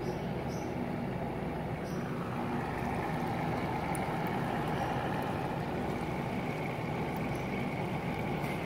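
Steady background room noise: an even hiss with a faint low hum underneath, unchanging, with no distinct events.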